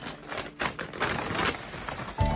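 Paper shopping bag rustling and crinkling as it is handled, an irregular crackle of many small clicks, loudest about halfway through.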